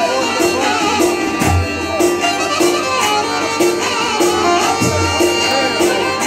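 Loud live Albanian wedding-party music: a steady drum beat and bass line under a winding, fiddle-like melody.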